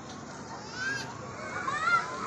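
Children's high voices calling out twice, rising and falling in pitch, over a steady background murmur.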